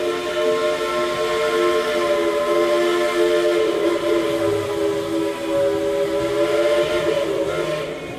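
A multi-tone whistle holding one steady chord over a faint hiss.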